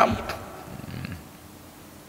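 A man's voice ending a word, then a pause with faint room tone and a soft low murmur about half a second to a second in.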